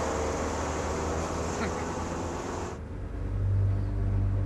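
Steady engine and road noise heard from inside a moving vehicle, a low hum under a hiss; about three-quarters of the way through the hiss cuts off suddenly, leaving a louder low steady hum.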